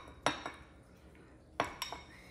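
Glass bowl clinking as blueberries are scraped out of it with a spatula into another glass bowl: one clink about a quarter second in, then a quick run of two or three clinks near the end, each ringing briefly.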